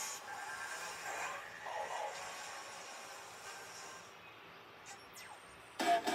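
Television sound: faint cartoon music and sound effects, then a children's cartoon theme song starts suddenly and loudly near the end.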